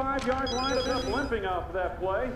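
A phone ringing: a quick electronic trill of short, evenly spaced beeps, starting about half a second in and lasting under a second.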